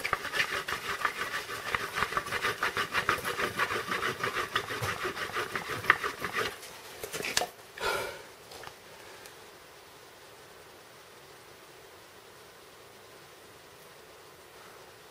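Flat wooden board pushed quickly back and forth over another board, rolling a tight cotton-and-wood-ash fire roll between them: a rapid, rhythmic wood-on-wood rubbing. The friction is heating the roll toward smouldering. The strokes stop about six and a half seconds in, with one brief louder sound near eight seconds.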